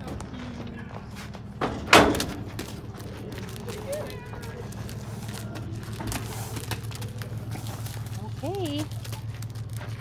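Horses being unloaded from a stock trailer: one loud, sharp thump about two seconds in, over a steady low hum, with a few short voices.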